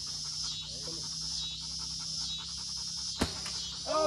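Evening insect chorus, a high-pitched drone pulsing about one and a half times a second, with a single sharp click about three seconds in.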